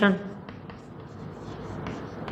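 Chalk writing on a blackboard: soft scratching with a few light taps as the strokes are made.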